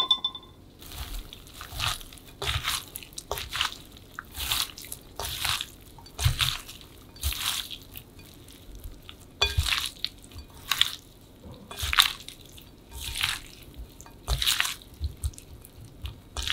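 A gloved hand tossing sauce-coated shredded vegetables and sea snails in a glass bowl: wet rustling strokes that come about once a second.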